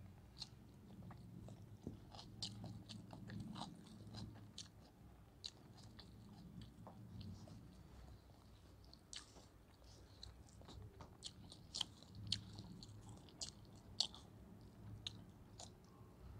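Close-up chewing and mouth sounds of a person eating biryani rice by hand: quiet, with many small, irregular wet clicks and smacks, a few sharper ones in the second half.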